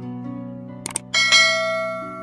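Subscribe-animation sound effect: a quick double click just before a second in, then a bright bell ding that rings out and fades, over sustained background music.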